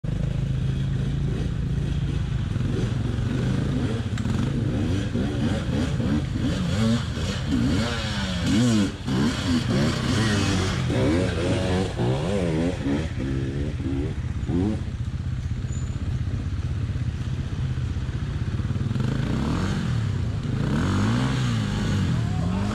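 Off-road dirt bike engines running, with the nearest bike's revs rising and falling repeatedly as it is throttled through a shallow creek. Water splashes around the wheels.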